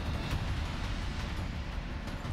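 Steady traffic and street noise with a low rumble, picked up by a reporter's open microphone on a live outdoor feed.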